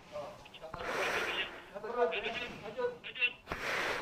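Quiet background speech: voices talking at a distance, below the level of the nearby speech before and after.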